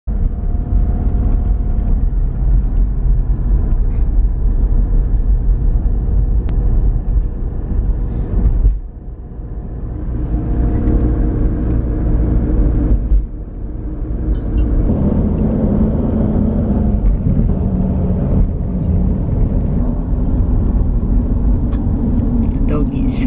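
Car travelling at highway speed, heard from inside the cabin: steady engine and tyre rumble, with two short drops in level about nine and thirteen seconds in.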